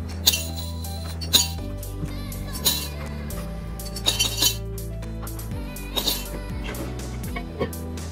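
Silver coins (nickels, dimes and quarters) dropped by hand into a glass jar, clinking against the glass and the coins already inside: about six separate clinks, over steady background music.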